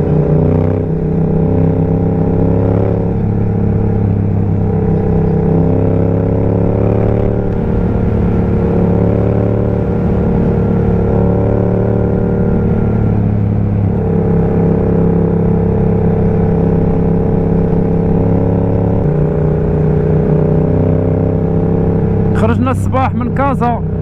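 Motorcycle engine heard from on the bike while cruising steadily on an open road. The engine note steps up a little past halfway, then drops back some seconds later.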